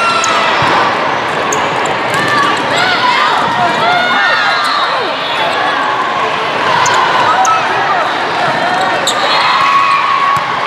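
Indoor volleyball rally: sneakers squeaking on the court, the ball being struck several times, over a steady babble of voices echoing in a large hall.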